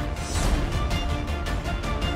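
Dramatic trailer music: a fast, steady pulse of about four beats a second over held tones, with a brief swell of hiss about half a second in.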